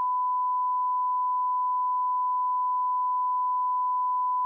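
Censor bleep: one steady, unbroken pure tone at about 1 kHz, dubbed over speech to mask offensive words being quoted.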